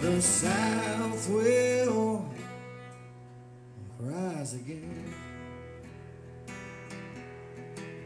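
Acoustic guitar strummed steadily while a man sings, with a long sliding vocal line in the first two seconds and a shorter one about four seconds in. The guitar carries on alone after that.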